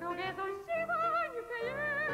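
A woman singing an operetta song in a classically trained voice with wide vibrato and swooping slides in pitch, over piano accompaniment.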